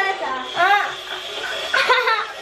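Voices: two short vocal sounds without clear words, one about half a second in and one near the end.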